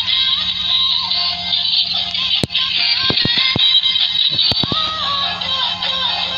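Battery-powered toy car's built-in sound chip playing a tinny electronic tune with synthetic singing as the car runs. A few sharp clicks come in the middle.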